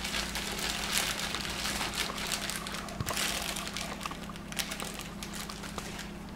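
Thin plastic deli bag crinkling and rustling in small irregular crackles as shaved roast beef is pulled out of it with a fork.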